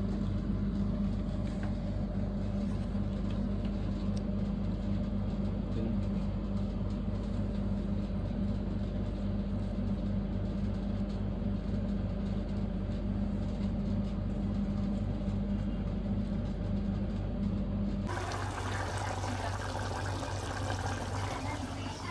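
Steady low motor hum in a kitchen. About eighteen seconds in, it cuts to a brighter, noisier hiss.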